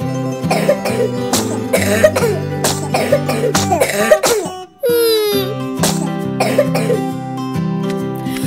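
Cartoon kittens coughing repeatedly over light guitar background music, a sign that they are sick. A short falling whistle-like sound effect follows about five seconds in.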